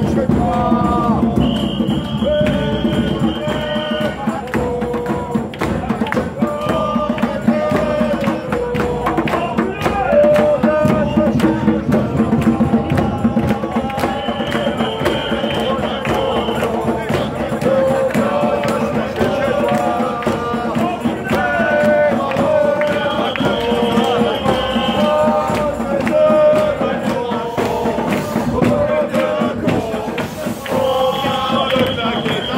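A crowd singing a chant together in a steady melody, with clapping or hand percussion running through it.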